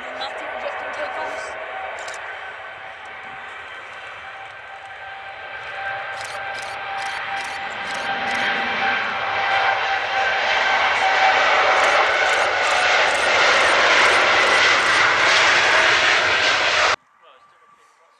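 Boeing 787 Dreamliner's twin jet engines at high power during its takeoff roll on a wet runway: steady whining fan tones over a rushing roar that grows louder as the jet passes. The sound cuts off suddenly about a second before the end, leaving a faint distant hum.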